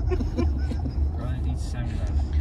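Steady low rumble of road and engine noise inside a moving Toyota car's cabin, with faint voices and laughter over it.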